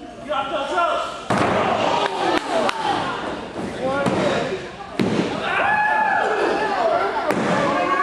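A wrestler lands heavily on the wrestling ring's mat about a second in, after a dive off the top rope, and the mat booms. A second heavy thud comes about five seconds in, with a few lighter knocks in between. Spectators' voices shout throughout.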